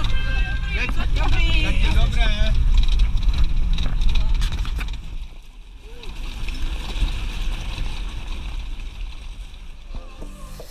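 Low wind rumble buffeting a small action-camera microphone under voices, loud for the first half and easing off about five seconds in.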